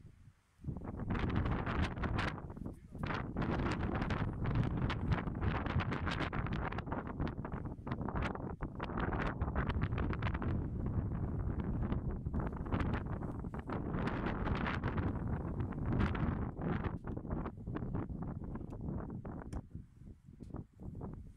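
Wind buffeting the microphone: a gusty, low-heavy rush with sharp flutters. It comes in abruptly about a second in, drops out briefly a couple of seconds later, and carries on to near the end.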